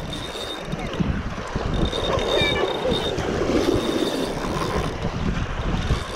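Wind buffeting the microphone over the wash of small surf breaking on a beach.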